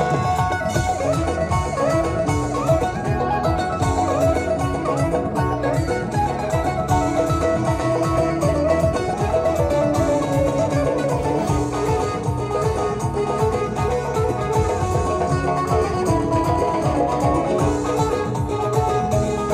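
Live traditional ensemble music: a long-necked plucked lute picks a quick, busy melody over keyboard accompaniment and a steady low drum beat.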